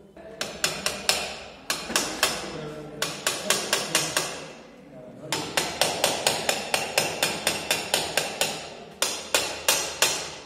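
Hammer blows struck in quick runs of about four a second, each with a short ringing tail, broken by brief pauses.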